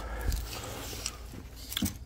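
Faint handling noise, with a few quick clicks just before the end.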